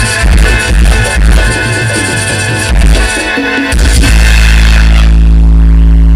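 A live band playing loud dance music, heard from the audience. About four seconds in, the beat stops and the band holds one long final chord.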